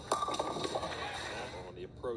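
Bowling ball hitting a full rack of ten pins for a strike: a sudden crash with a second of pins clattering.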